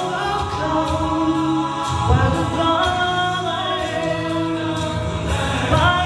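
A man singing a gospel song solo into a microphone, holding long notes that glide between pitches, over steady low instrumental backing.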